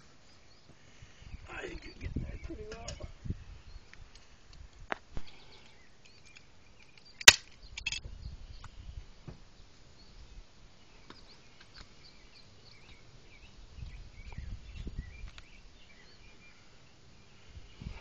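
Loose soil being shoveled in and pressed down by hand, soft irregular thuds and scrapes of dirt, with one sharp click about seven seconds in that is the loudest sound.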